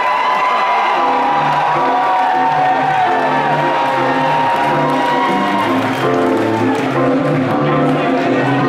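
Live funk band starting a tune: a rhythmic electric bass riff comes in about a second in, under long held higher notes, with the crowd cheering.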